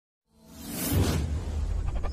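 A whoosh sound effect swelling in from silence over the first second, with a steady low bass underneath.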